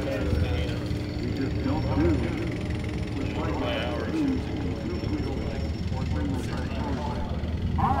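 Background voices of people talking over a steady low rumble, with a faint steady hum that fades out about three seconds in.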